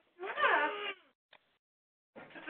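A cat meowing once, a single wavering, falling cry heard over a phone-line audio feed, followed by a faint click and then dead silence.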